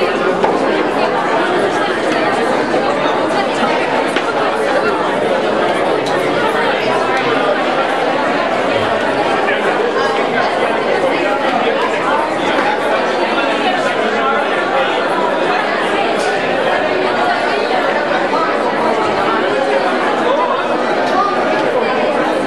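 Crowd chatter: many people talking at once in a room, a steady babble of overlapping conversation with no single voice coming through clearly.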